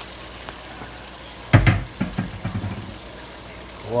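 Pork frying in a wok with a steady low sizzle; about one and a half seconds in, a loud knock followed by a run of clattering scrapes as a wooden spatula goes into the wok and stirs the meat.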